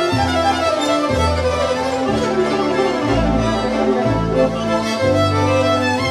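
Violin played with the bow in a live performance, over a sustained bass line that changes note about once a second.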